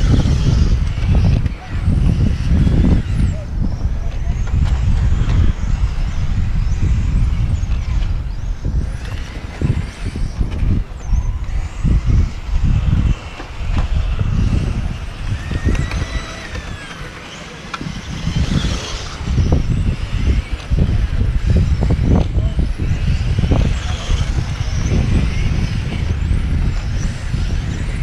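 Electric RC touring cars running laps, their motors giving faint whines that rise and fall with throttle, over a loud, uneven low rumble.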